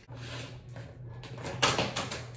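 Handling noise as hair tools are set down and picked up at a bathroom counter, with one sharp, short noise near the end.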